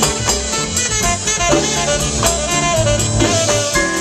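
A live Latin jazz band playing a soul tune, saxophone and brass carrying the melody over a steady drum beat.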